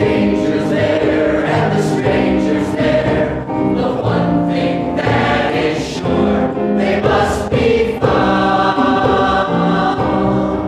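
A large stage-musical cast singing together in chorus, in loud held notes that change every second or so.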